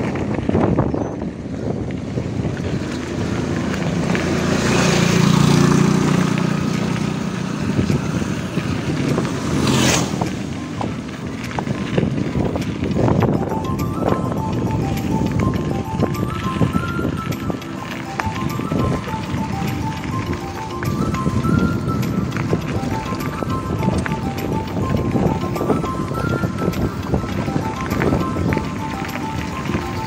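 Mountain bike riding over a gravel road, heard as a rushing, rumbling noise of wind on the microphone and tyres rolling on loose stones, with a sharp knock about ten seconds in. From about a third of the way through, background music carries a repeating high melody over it.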